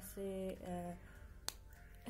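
A single sharp plastic click about a second and a half in, as the cap of a CD marker pen is snapped back on, after a short stretch of a woman's voice.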